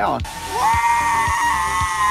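A person's shrill scream, held for nearly two seconds at one high pitch over a loud hiss, with music underneath.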